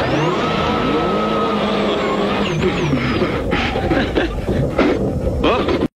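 Mitsubishi Lancer Evolution 6.5 rally car's turbocharged 2.0-litre four-cylinder engine being driven hard, its revs rising and falling repeatedly through gear changes and corners. The sound cuts off suddenly at the very end.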